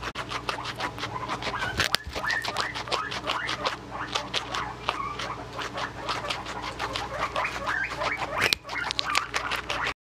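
Guinea pig crunching on a raw carrot close to the microphone: quick, rhythmic crunches, about five or six a second, with a louder knock about two seconds in and another near the end.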